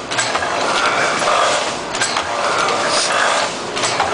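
Heidelberg Windmill platen letterpress running in production, a continuous repeating mechanical clatter. A sharp clack comes about every two seconds as the press cycles, its gripper arms feeding sheets to be printed.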